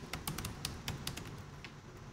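Typing on a laptop keyboard: a quick run of key clicks in the first second, then a few more spaced out.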